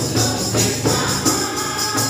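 A mixed group of church singers singing a gospel hymn together, voices in unison over a steady low accompaniment, with a jingling tambourine keeping the beat.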